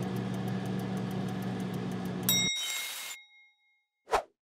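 Microwave oven humming steadily while it runs, then cutting off with a bright ding a little past halfway, the end-of-cycle bell ringing on for about a second.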